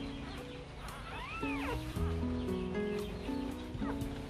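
Background music with held notes, and a newborn Rottweiler puppy giving one high squeak that rises and falls about a second in, with fainter short squeaks near the end.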